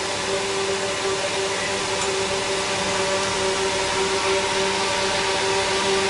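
Ceiling fan running on the newly wired inverter supply: a steady whirring hum with a few constant tones, unchanging throughout.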